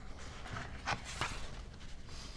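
Sheets of paper being handled at a lectern, with two brief rustles about a second in over faint room noise.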